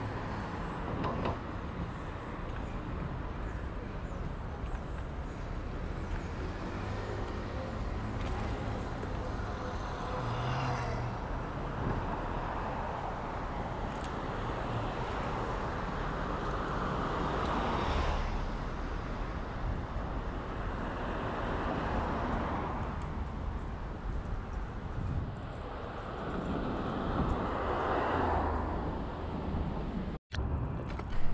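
Road traffic on a city avenue: cars swell past several times over a steady low rumble of road noise.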